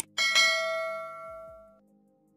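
A notification-bell ding sound effect sounds as the subscribe animation's bell is clicked. A short mouse click is followed by a bright bell tone that rings out and fades away over about a second and a half.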